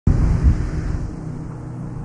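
A deep low boom that starts suddenly and slowly fades, with a wind-like hiss over it.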